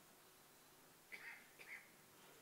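Near silence: room tone of a large hall, with two brief faint sounds a little after a second in.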